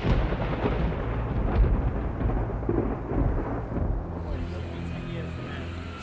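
Recorded thunder rumbling with rain over a low, sustained musical drone. The thunder is loudest at the start and fades out about four seconds in, leaving the drone.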